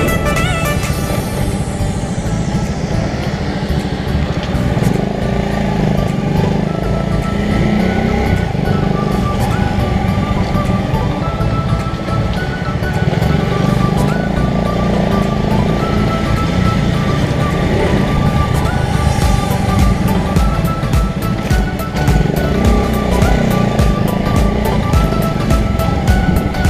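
Suzuki GSX-R150's single-cylinder engine running as the motorcycle rides along at low speed, mixed with background music.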